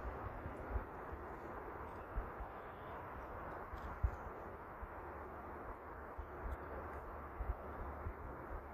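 Quiet outdoor background noise: a steady low hiss and rumble with a few faint knocks, the clearest about four seconds in.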